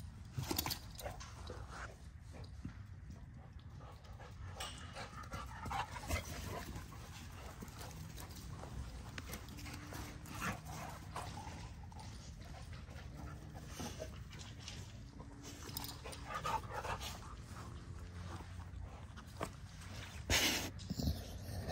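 Dogs moving about close by, panting, with a few faint whines and rustling and steps in grass.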